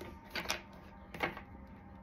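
Tarot cards being handled: two brief clusters of soft clicks and rustles, about half a second in and again after a second, as the deck is gripped and lifted.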